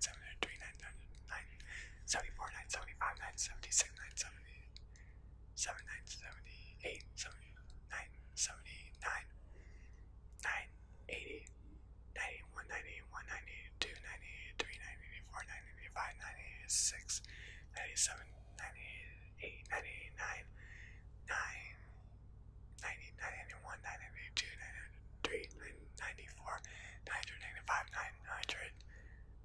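A man whispering numbers one after another in a steady count, with breathy hissing on each word, over a faint steady low hum.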